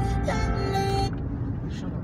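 Music playing from the car's FM radio, with sustained notes that stop about a second in, leaving the steady low hum of engine and road noise in the moving car's cabin.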